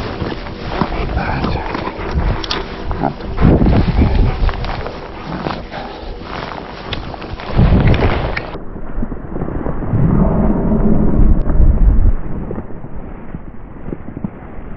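A dog growling in rough bursts while tugging on a stick. In the second half, wind buffets the microphone with a loud low rumble.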